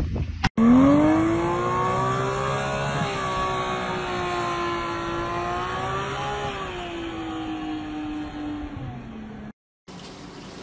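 Sports car engine revved up sharply about half a second in and held at high revs, wavering a little, then easing slightly before it cuts off near the end. The car is in deep snow.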